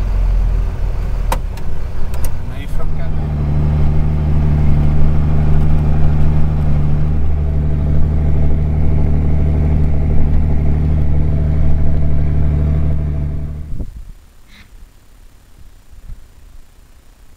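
John Deere 4755 tractor's diesel engine running steadily under heavy load, pulling a five-furrow reversible plough through the soil, heard from inside the cab. A few sharp clicks come in the first few seconds, and the engine sound cuts off suddenly about 14 seconds in.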